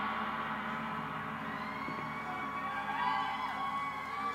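Large orchestral gong's ringing dying away slowly, its many overtones fading. From about halfway through, audience whoops and cheers come in over it.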